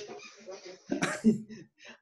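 A person's single short cough about a second in, heard over a video-call connection, with faint murmured speech around it.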